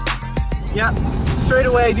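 Background music with a beat, ending about half a second in. It gives way to the steady road and engine noise inside a 2016 Jeep Wrangler Sport driven with the top open, under a man's speech.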